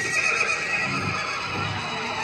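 Recorded horse whinny with hoofbeats, a sound effect in the performance's backing track, over music.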